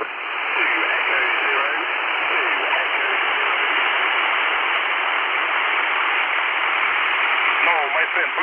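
Radtel RT-950 Pro handheld's speaker receiving 20-metre single-sideband: a steady hiss of band noise with a weak, faint voice showing through it, the sound of a weak distant SSB signal.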